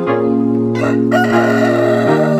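A rooster crows about a second in, over background music with sustained chords.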